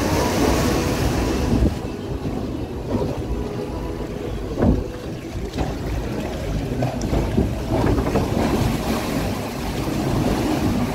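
Water rushing and splashing around a log flume boat as it floats along the flume channel. The hissing splash is strongest for the first two seconds, then settles, and a few short knocks sound through it, the loudest about halfway through.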